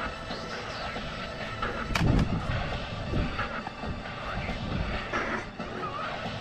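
Low, irregular rumbling of wind buffeting the microphone, with a single sharp knock about two seconds in.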